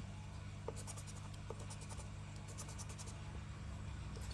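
Faint steady scratching of a scraper rubbing the coating off a lottery scratch card, with a couple of light taps about a second in.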